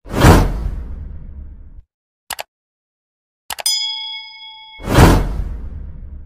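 Subscribe-button animation sound effects: a loud whoosh with a deep rumble, a short click, then a click and a bell ding that rings for about a second, followed by a second whoosh.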